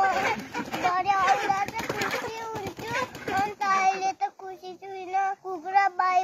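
A small boy talking in a high voice, with some held, sing-song notes. A crackling noise runs under his voice for the first half.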